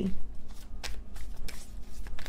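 A tarot deck being shuffled by hand: a run of quick, irregular card clicks and rustles.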